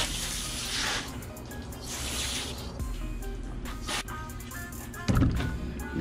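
Garden-hose spray nozzle hissing as water hits a fish on a cutting board, in two bursts: one at the start lasting about a second, another around two seconds in. Background music plays throughout.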